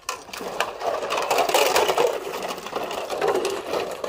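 Dishes being washed by hand in a basin of water: water sloshing and splashing, with crockery clinking against other crockery.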